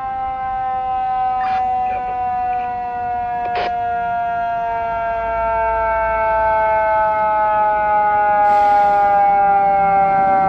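Fire engine siren sounding as the engine approaches: one long tone that slides slowly and steadily down in pitch, growing louder toward the end.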